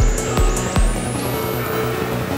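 Electronic dance music played live. A kick drum beats three times on the beat and then drops out about a second in, while a high sweep keeps rising and sustained low synth notes carry on.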